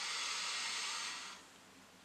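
A man drawing one long, deep breath in through the nose, which ends about a second and a half in.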